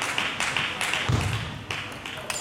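Table tennis rally: the ball clicking sharply off bats and table about four times a second, stopping about a second in, where a dull low thud sounds.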